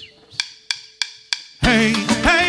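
Four evenly spaced wood-block clicks, about three a second, counting in a manele band, which comes in loud near the end with bass and a wavering melody line.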